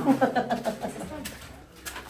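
A person's voice, a short untranscribed utterance in the first second, then quieter room sound.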